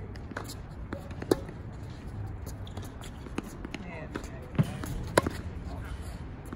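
Tennis ball struck by rackets and bouncing on a hard court. There are sharp pops about a second in and twice close together near the end, over a steady low hum.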